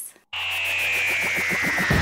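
Electronic theme music starts suddenly after a brief gap. A high tone glides slowly downward over a quick, even pulsing beat, and a heavy bass line comes in near the end.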